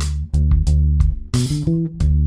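Electric bass playing a major pentatonic fill exercise that works up the neck, with a quick run of rising notes about one and a half seconds in. A play-along backing track runs underneath, with sharp attacks about three times a second.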